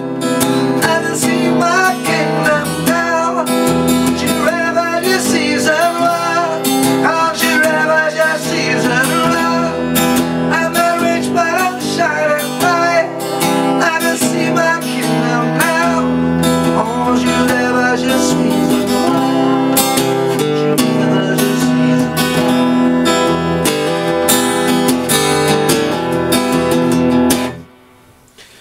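Acoustic guitar strummed and picked, playing a passage of the song without words, then stopping abruptly just before the end.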